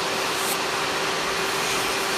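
Valentino electric nail file spinning a coarse sanding band against gel polish on a fingernail, a steady whine over an even hiss.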